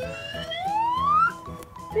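A cartoon sound effect: a whistle-like tone sliding steadily upward in pitch for a little over a second, over light background music.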